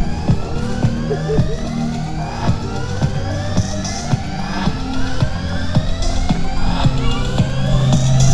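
Electronic ambient music played by a light-art installation: a series of rising synthesized sweeps repeats about every second over steady low droning tones, with short sharp clicks.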